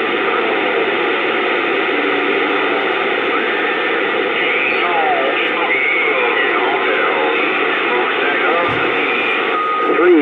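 Bearcat CB radio on channel 28 receiving weak distant skip: a steady hiss of static with faint, garbled voices and wavering whistles drifting through it, too broken up to make out. It sounds thin and band-limited, as a radio speaker does.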